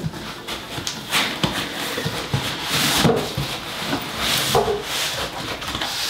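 Packaging being handled: a dense foam tray of parts scraping and rustling against a cardboard box as it is pulled out, with scattered light knocks.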